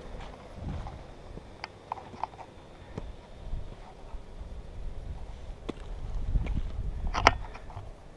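Wind rumbling on a handheld camera's microphone, swelling near the end, with scattered small clicks and knocks of the camera being handled and turned; the sharpest knock comes about seven seconds in.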